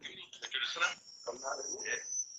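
Indistinct, broken-up talk over a video-call link, with a steady high-pitched tone setting in near the end.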